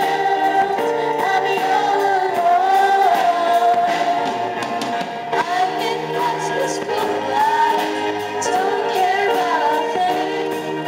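A group of children singing a slow song in chorus, accompanied by several strummed acoustic guitars.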